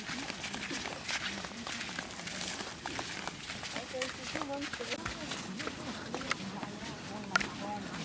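Faint, indistinct chatter of several people walking, with footsteps and many small clicks underfoot on a dirt path.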